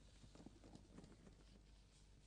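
Near silence: room tone with a steady low hum and a few faint scattered clicks.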